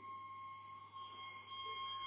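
Solo viola playing very softly: a faint, high sustained tone held steadily, with a second, higher tone joining about a second in.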